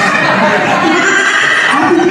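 A performer's voice through the venue's PA, drawn out in held notes that waver up and down in pitch rather than spoken words.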